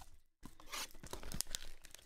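A Panini Zenith football card box being torn open by hand: a crackling, crinkling tear of its wrapping that starts about half a second in and runs on with many small clicks.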